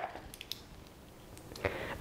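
Faint handling noises from a lipstick tube being turned over in the hand, with a few small clicks about half a second in and again near the end.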